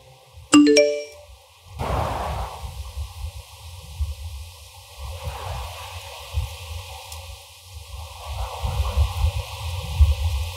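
Phone notification chime, three quick notes rising in pitch about half a second in; then low, gusty wind rumble on the microphone.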